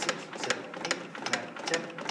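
Rhythmic clicking of a CPR training manikin's chest as it is pressed down in hand chest compressions, about two clicks a second.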